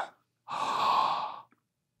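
A person sighs once: a breathy, unvoiced breath about a second long.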